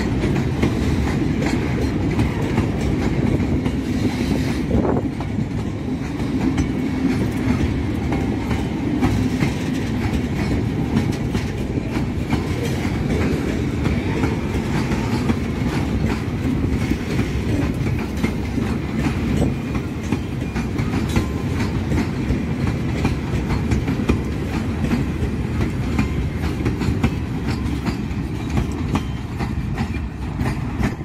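Freight train of mining hopper wagons rolling past: steady rumble of steel wheels on rail with a continual clickety-clack over the rail joints.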